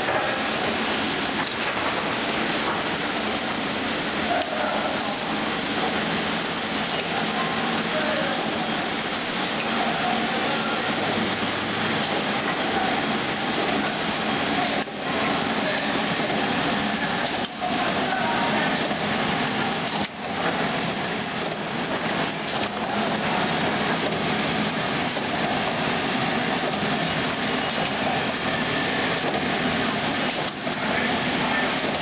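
Automatic bottle-lid pad printing machine running: a steady, dense clatter of many plastic caps tumbling on the slatted elevator feeder and down the chutes, mixed with the machine's running noise.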